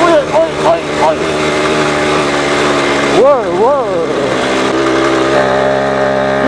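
Small two-stroke moped engine running steadily under way. The rider's wavering 'oh-oh' shouts come over it near the start and again a little after three seconds in.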